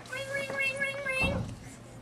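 A high voice holding one long, steady note for just over a second, followed by a short low thump as it ends.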